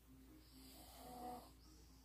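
A sleeping person snoring faintly: one soft snore swells and fades in the first second and a half.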